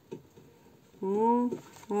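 Near-quiet room tone with a faint click just after the start, then a short wordless hum from a person's voice lasting about half a second, beginning about a second in.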